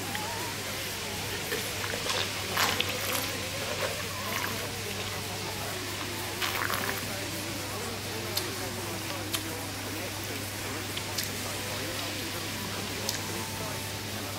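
Red wine being sipped from a glass, heard as a few short noisy sounds over a steady low hum and faint background voices.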